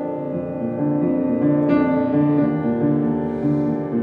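Kawai upright piano played solo: held chords over a gently repeating low figure, with a new chord struck about two seconds in.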